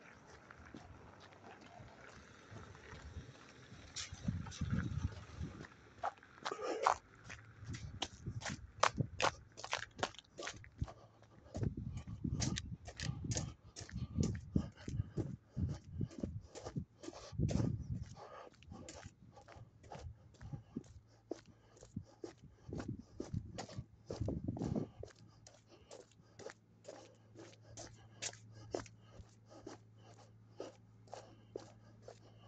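Footsteps of a person walking on wet, icy pavement, a steady run of short steps about two to three a second, with bouts of low rumble from the phone being carried. A low steady hum comes in near the end.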